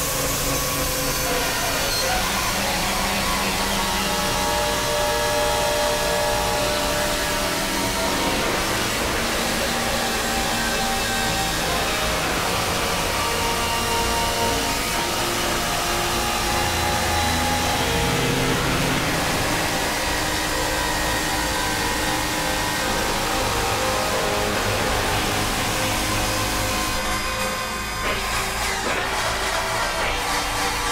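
Experimental electronic drone music from synthesizers: a dense, noisy wash with many held tones layered through it, slowly shifting in pitch. Near the end the texture thins and briefly dips in loudness before carrying on.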